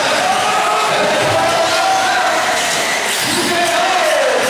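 Several 1/8-scale RC off-road buggies racing, their small engines buzzing with a pitch that rises and falls as the throttle opens and closes, echoing in a large hall.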